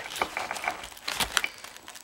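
Old vinyl-covered interior trim panel being handled and bent by hand: a scatter of short crackles and rustles from the stiff covering and panel board.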